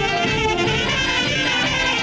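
Romanian folk song: a group of children singing together over a brass-led band accompaniment, playing steadily.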